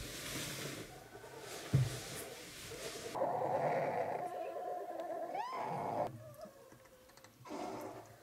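Young brown bear cubs, about six weeks old, stirring in their den. There is soft rustling on the bedding and a thump just before two seconds in, then a cub's drawn-out whimpering call from about three to six seconds in.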